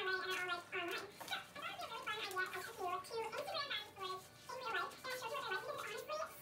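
A quiet, high-pitched voice with no clear words, going on throughout.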